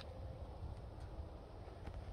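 Quiet outdoor background: a faint, steady low rumble with no distinct sound event.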